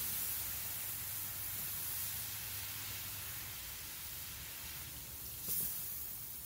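Water poured from a stainless steel pot splashing onto cast iron grill grates: a steady hiss that slowly fades, with a brief rise near the end.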